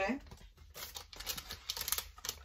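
Foil LEGO minifigure bag crinkling as it is handled, a run of quick, irregular crackles that thickens in the second half.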